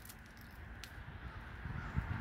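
Faint outdoor roadside background: a low, steady rumble with a light hiss and no distinct event.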